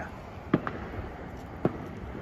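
Two short, sharp pops about a second apart.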